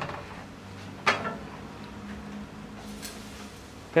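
A single sharp knock about a second in, dying away quickly, with a fainter tick near the end, over a low steady hum.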